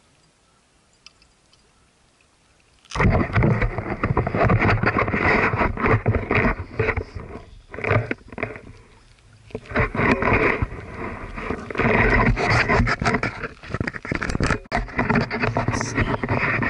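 Near silence for about three seconds, then suddenly loud, rough scraping and rumbling handling noise on the camera's microphone as the camera is moved about and rubbed against clothing, with a couple of brief dips.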